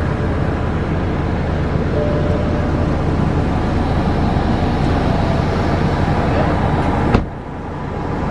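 A loud, steady rushing noise with no clear pitch, heaviest in the low range, that cuts off suddenly about seven seconds in.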